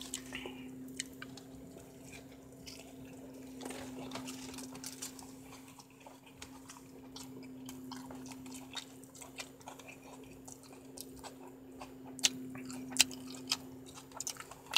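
A person quietly chewing a taco and handling its paper wrapper, with scattered small clicks and rustles and a few sharper crackles near the end, over a steady low hum.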